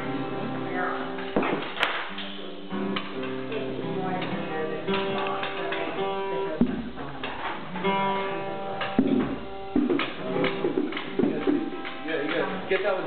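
Live amateur music played straight after a count-in: a song of held, pitched notes with frequent sharp plucked or struck attacks.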